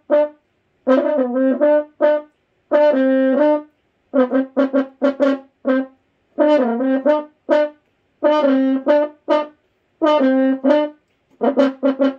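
Double French horn played solo: a syncopated passage of short, detached notes in brief phrases, with rests between them.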